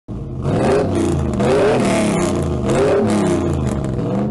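Loud intro sound effect: an engine-like drone whose pitch sweeps up and back down twice, layered with hiss.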